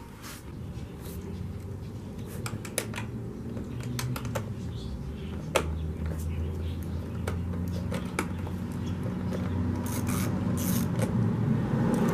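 Scattered metallic clicks and clinks of a 10 mm wrench working the seat bolt on a motorcycle as the bolt is loosened and taken out, over a low steady rumble that slowly grows louder.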